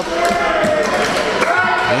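Thuds and knocks on a wrestling ring as the wrestlers move on the canvas, the sharpest a little past halfway, with voices in the hall.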